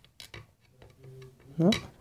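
A few light metallic clicks in the first second as a screwdriver tip taps and scrapes on the metal shaft end of a washing machine motor, at the tacho coil.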